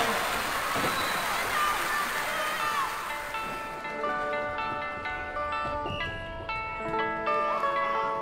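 Audience applause dying away over the first few seconds, then a live band starts the song's instrumental intro, an electric guitar among it, with a run of held notes changing pitch every half second or so.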